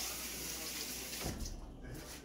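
Water running from a tap as hands are washed under it. The flow stops about a second and a half in, with a low knock.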